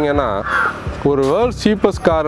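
A man talking, with a short bird call about half a second in.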